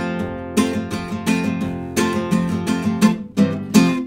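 Nylon-string classical guitar strummed in a steady rhythm of chords, an instrumental passage with no singing.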